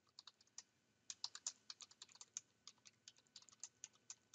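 Faint keystrokes on a computer keyboard: a person typing a phrase, several keys a second in an irregular run.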